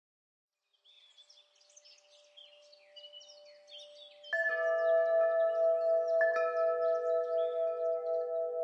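Faint birdsong chirps from about a second in. A little past halfway a bell-like chime is struck, and again about two seconds later; each strike rings on with a slow wavering.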